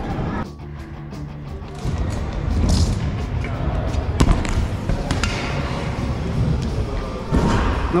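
Stunt scooter's wheels rolling on a ramp, then a sharp impact about four seconds in as the scooter comes down from a transfer jump, with a smaller knock a second later. Background music plays throughout.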